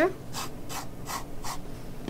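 Pencil scratching on drawing paper in four short, faint strokes, each about a third of a second apart.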